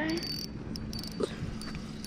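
Insects chirping with a thin, high-pitched tone in short, repeated bursts.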